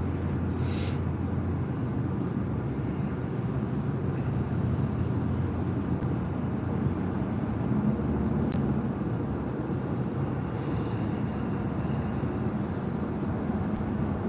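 Steady road and engine noise inside a moving car's cabin, with a constant low hum.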